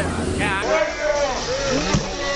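Raised, agitated men's voices in a confrontation, with one high, wavering yell about half a second in. A low steady hum underneath cuts off suddenly just after that, and there is a single sharp knock near the end.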